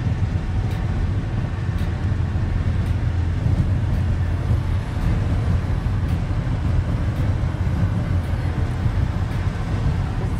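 Steady road and engine noise inside the cabin of a car moving at highway speed, an even noise that is mostly low in pitch.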